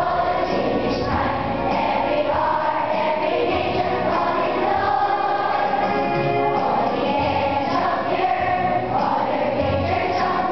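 A choir singing a hymn in long held notes.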